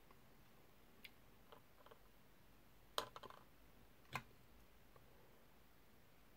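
Near silence broken by a few small clicks and taps of a hand tool and a plastic miniature part being handled, the loudest about three seconds in with a short cluster after it, and one more about a second later.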